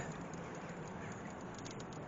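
Quiet, steady outdoor background hiss with no distinct sound event.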